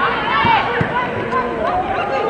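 Voices over the arena background of a volleyball broadcast, with two short knocks about half a second and just under a second in.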